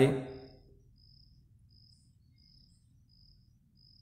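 Faint cricket chirping: short high chirps, evenly spaced about every two-thirds of a second, over near-silent room tone.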